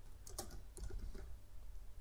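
Computer keyboard being typed on: several faint, quick keystrokes in the first half, over a low steady hum.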